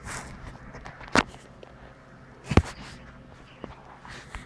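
Soft rustling, then two sharp knocks about a second and a half apart: handling noise from a handheld camera moving close against a dog's curly fur.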